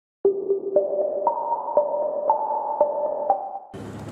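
Short electronic intro jingle: a run of clear, pinging notes about two a second, stacking up from a low note into a held chord, that stops shortly before the end.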